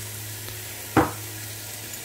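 Onion, garlic, ginger and herbs frying in coconut oil in a stainless steel pan, a steady low sizzle under a constant low hum, with a single sharp knock about halfway through.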